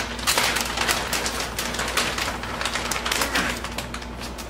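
Thick plastic sheeting crinkling and crackling in irregular bursts as it is handled around a mattress.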